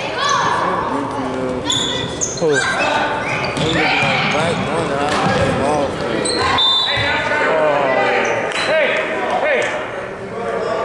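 Basketball game in a gym: many voices from players and spectators calling out and chattering over one another, with a basketball bouncing on the hardwood court.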